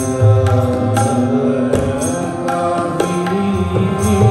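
Sikh kirtan: harmonium chords and tabla strokes accompanying voices singing a shabad in a steady devotional rhythm.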